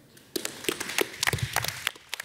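Scattered applause from a small audience, starting about a third of a second in as a run of separate, irregular claps.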